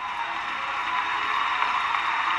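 Audience applauding, swelling up at the start and then holding steady.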